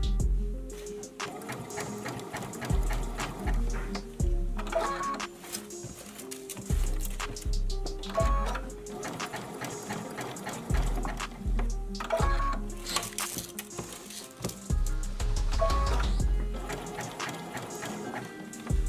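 Background music with a steady beat and deep bass notes, with a domestic sewing machine stitching beneath it.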